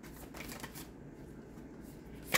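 A tarot deck being shuffled and handled in the hands: soft, faint card flicks and rustles, a little busier in the first second.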